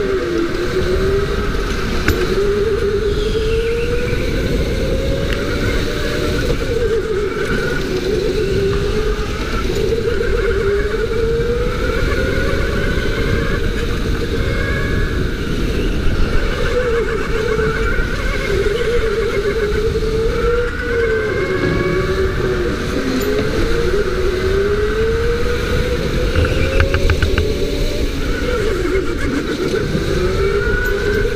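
Go-kart motor whining as it drives laps, its pitch climbing on each straight and dropping sharply into the corners, over a steady low rumble from an onboard camera.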